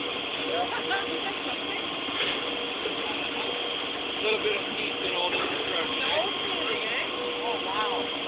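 A fire truck engine runs steadily, a continuous drone under a steady haze of noise. Faint voices of people talking are heard off and on through it.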